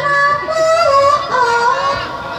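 A woman singing in the Javanese sinden style of ebeg music: one long, wavering phrase of held notes that bend slowly up and down in pitch.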